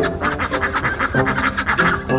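A duck quacking repeatedly over background music.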